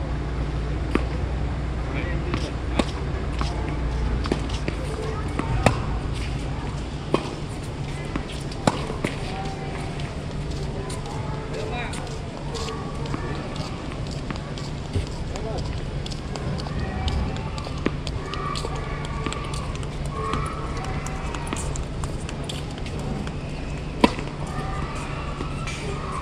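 Tennis ball struck back and forth with rackets in a rally: sharp pops about a second and a half apart through the first nine seconds or so, then people talking, and one more loud pop near the end.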